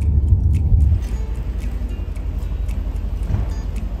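Low road rumble inside a moving Mercedes-AMG sedan's cabin, cutting off about a second in; after that a quieter, steady low hum under light background music.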